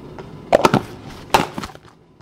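A spoon knocking against a jar as salt is tipped in: a few sharp knocks about half a second in and another cluster about a second later.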